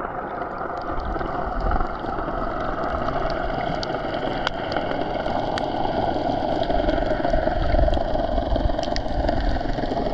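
Underwater sound picked up by a GoPro in its housing below the surface: a steady rushing noise of moving water, with scattered sharp clicks.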